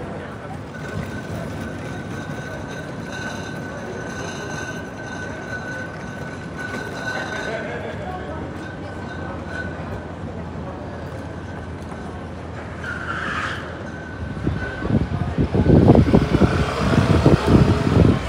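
City street noise with passing traffic and a steady high-pitched tone. In the last few seconds, gusts of wind buffet the microphone in loud, ragged low rumbles.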